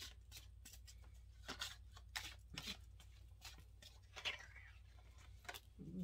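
A deck of tarot cards being shuffled and handled by hand: faint, irregular soft clicks and slides of the cards.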